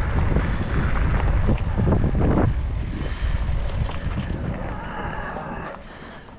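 Wind rushing over the microphone of an electric dirt bike rider's helmet camera, with tyres crackling over a gravel track. The rush eases off toward the end as the bike slows.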